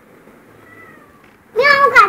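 A young child's voice: one short, loud, high-pitched call about a second and a half in, held briefly and then falling in pitch.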